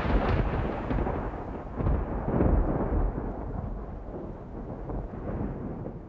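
A long, deep rumble of thunder that swells again about two seconds in and then slowly dies away.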